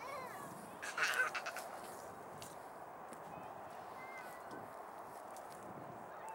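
A waterfowl's short honking call about a second in, then steady outdoor background noise.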